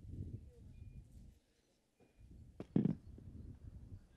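Handheld microphone handling noise: low rumbling and rubbing, with one sharp thump just before three seconds in.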